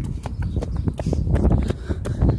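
Jogging footsteps on a concrete sidewalk: a quick, uneven run of light slaps and thuds, about four or five a second. Under them is a low rumble of wind and handling noise on a phone microphone carried at a jog.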